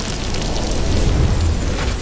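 Cartoon freeze-blast sound effect: a rushing, hissing whoosh over a deep rumble that swells about a second in.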